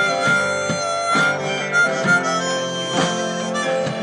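Live band's instrumental break: a harmonica playing a solo line of held notes over strummed acoustic and electric guitars and drums.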